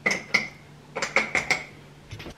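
A series of sharp clinks and knocks of hard objects: two near the start, then four in quick succession about a second in, each with a brief ringing tone.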